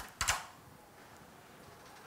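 A faint click at the very start, then a louder short knock about a quarter of a second in, followed by quiet room tone.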